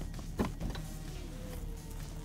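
Electric power tailgate of a BMW 6 Series Gran Turismo releasing with a sharp click about half a second in, then its motor humming steadily as the tailgate begins to lift.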